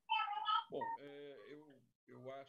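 A short high-pitched cry, followed by a faint, low voice with wavering pitch.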